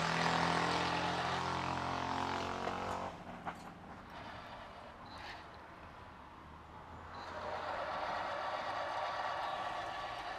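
Tapping machine motor running as a tap cuts threads into holes in a metal fixture plate: one run for about three seconds, a quieter gap, then a second run starting about seven seconds in.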